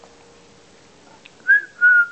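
A person whistles two short notes to call puppies about a second and a half in, the first a quick rise and fall, the second held briefly at a steady pitch.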